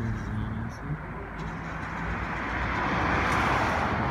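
Traffic noise from a car driving by, a rushing tyre-and-engine sound that swells louder over the last two seconds.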